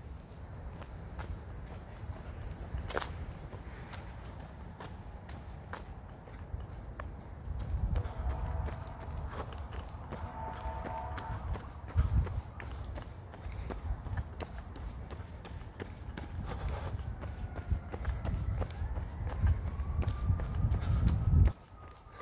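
Footsteps of a person walking on a paved path, with gusty low rumble from wind and handling on a handheld phone microphone.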